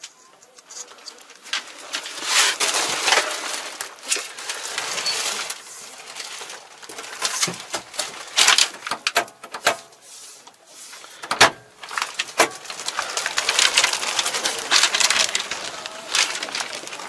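Rustling and handling noise with scattered knocks as someone climbs out of a tractor cab, with a couple of sharper knocks past the middle.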